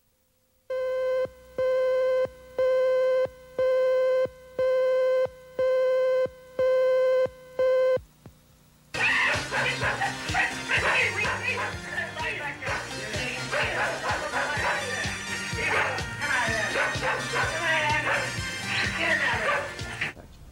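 About eight evenly spaced electronic beeps of one steady tone, each just under a second long; then, from about nine seconds in, dogs barking and yipping in a dogfight.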